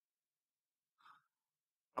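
Near silence in a pause between sentences of a man's speech, with one faint, short breath about a second in.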